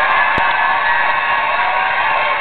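A crowd cheering and whooping, with one sharp knock about half a second in.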